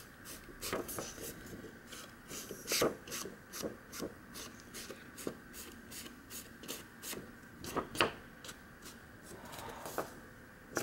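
Small foam ink dauber rubbed and dabbed along the edge of a sheet of patterned cardstock to ink its edges: a quick, uneven run of short rubbing strokes, several a second, with a couple of louder ones.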